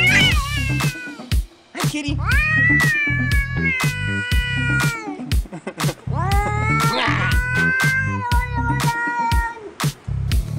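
A domestic cat meowing in two long drawn-out calls of about three seconds each. Each rises in pitch at the start and then holds steady. A short rising meow comes right at the start, and background music with a steady beat runs underneath.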